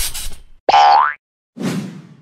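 Cartoon sound effects for an animated logo: a sudden hit at the start, then a short springy boing rising in pitch about a second in, the loudest sound, then a softer thump that fades near the end.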